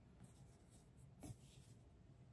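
Near silence: room tone, with one faint, brief handling knock a little over a second in as an object is picked up.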